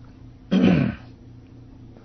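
A man clearing his throat once, a short, loud burst about half a second in.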